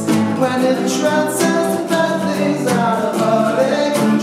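Two male voices singing together over two strummed acoustic guitars.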